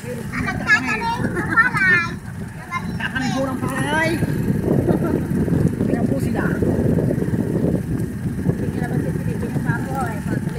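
Vehicle ride noise: a steady, rumbling motor and road sound while moving along a dirt road, with voices over the first four seconds.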